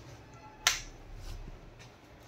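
A single sharp click about two thirds of a second in, over faint room noise.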